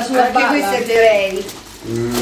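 Speech: voices talking, with no other clear sound, fading briefly near the end.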